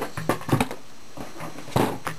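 A cardboard shoe box lid being picked up and handled: a few light knocks and rustles, then one louder thump near the end.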